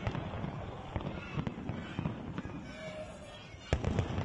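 Fireworks going off in a rapid run of sharp pops and crackles, with one louder bang near the end.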